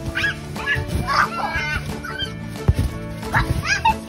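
Background music with children's high-pitched squeals and shrieks as they bounce on a trampoline, and one sharp thump a little past halfway.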